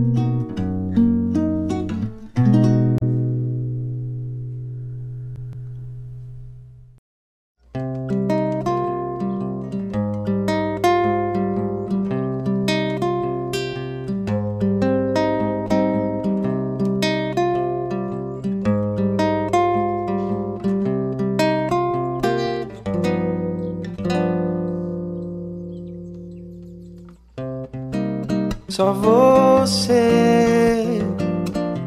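Acoustic guitar music: a chord rings out and fades to a brief silence about seven seconds in. Then the guitar starts again with a steady run of plucked notes over a bass line.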